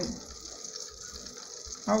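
An egg frying in oil in a pan, with a steady sizzle.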